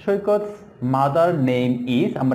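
A man's voice speaking in a drawn-out, sing-song way, holding long level tones in the second half.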